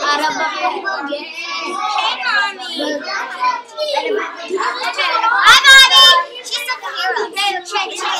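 Young children's voices chattering and talking over one another, with a loud, high-pitched cry about five and a half seconds in.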